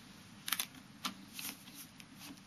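A few faint clicks and light rustles of handling at a flatbed scanner, the first about half a second in the loudest, then single clicks about a second in and near the end.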